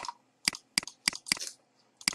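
A quick series of sharp computer mouse clicks, about half a dozen in under two seconds, the last few close together.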